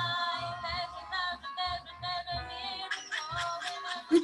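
A song with a sung melody and accompaniment playing back, heard through a video call's audio.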